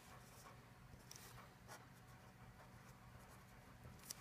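Faint squeaks and scratches of a felt-tip marker drawing short strokes on paper, over a steady low hum.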